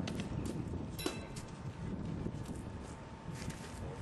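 Wind buffeting an outdoor camcorder microphone, a fluctuating low rumble, with scattered small clicks and knocks and one sharper clink with a brief ring about a second in.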